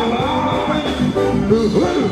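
Live band music, with a man singing into a microphone over the band.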